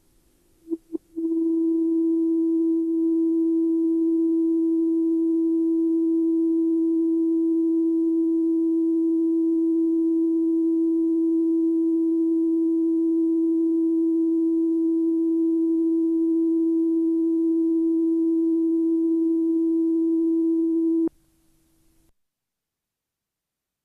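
A steady electronic test tone of one fixed pitch, held unchanged for about twenty seconds and then cut off suddenly. It is preceded by two short blips.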